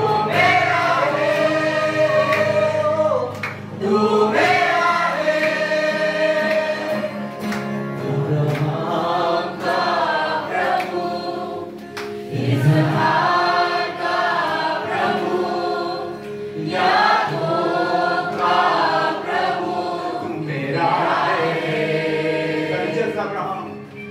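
Worship song sung by a choir, in phrases a few seconds long with short dips between them, over a steady low sustained accompaniment.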